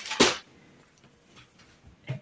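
A short swish of a cotton pajama top being shaken out and held up, once, just after the start, followed by faint handling sounds.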